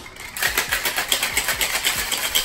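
A stainless steel cocktail shaker being shaken hard, its contents rattling in a fast, even rhythm of about six strokes a second that starts about a third of a second in.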